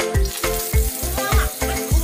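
Background music with a steady beat over hot oil sizzling in a wok as onion, capsicum and curry leaves are tossed in with dried red chillies.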